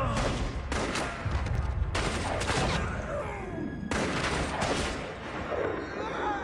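Several loud bursts of noise like gunfire, one every second or so, with a wavering pitched sound between them.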